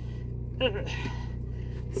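A woman's short "uh" and a quick breath of effort as she strains at her prosthetic socket, over a steady low hum.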